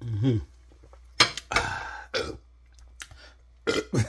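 A man's loud burp, low and falling in pitch and about half a second long, after gulping down a glass of vegetable juice. It is followed by a few short breathy bursts of breath.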